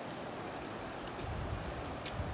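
Shallow mountain stream running over rocks, a steady rush of water. A low rumble comes in about a second in.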